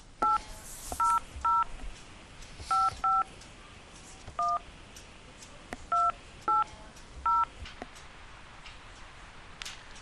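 Touch-tone telephone keypad tones: about nine short two-pitch beeps at uneven intervals as a number is keyed into an automated phone menu. The number is read back as 800-555-1212.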